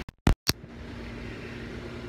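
The sound cuts out briefly twice, with two sharp clicks, as the phone switches cameras. After that a steady low mechanical hum of background noise carries on.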